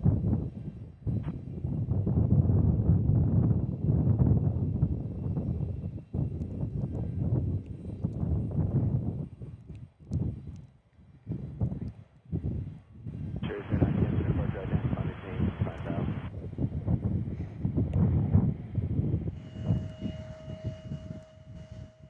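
Gulfstream business jet's engines at takeoff power as it lifts off and climbs out. The low noise swells and fades unevenly with wind on the microphone.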